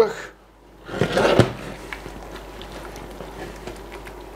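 Wooden spoon stirring sauerkraut thickened with milk and flour in a stainless steel saucepan: soft scraping and squelching, louder about a second in and then low and steady.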